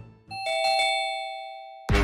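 Two-note electronic doorbell chime, ding-dong, ringing out and slowly fading. Near the end a loud burst of dramatic background music cuts in.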